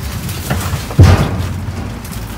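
A loud, deep thump about a second in, with a lighter knock about half a second before it, from someone moving about among cardboard boxes and bags inside a metal dumpster.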